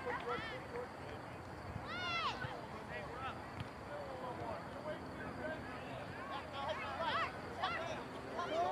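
Distant voices of players and spectators around a soccer field: scattered chatter and calls, with short high shouts about two seconds in and again near the end.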